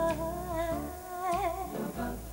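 Advertising jingle music: a lead voice holds wavering notes over a low bass line.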